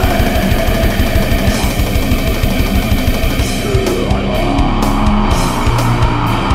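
Grindcore band recording: distorted electric guitar over fast, dense drumming, which about halfway through gives way to sparser hits and held low notes.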